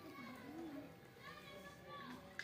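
Faint voices of children talking.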